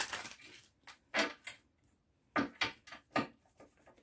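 Tarot cards being handled on a table: a string of short snaps and rustles as cards are picked up and laid down, with a busier run of them past the middle.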